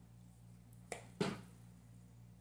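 Two sharp clicks about a third of a second apart, the second louder, from handling a small makeup compact and its packaging.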